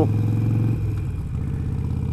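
Harley-Davidson Sportster's air-cooled V-twin engine running while riding; a little under a second in its note drops and softens slightly.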